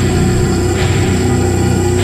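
Slow doom metal: heavily distorted guitars and bass holding a low, sustained chord at a steady, loud level.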